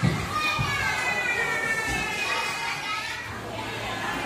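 Young children playing and calling out in high voices, with a sharp thump right at the start.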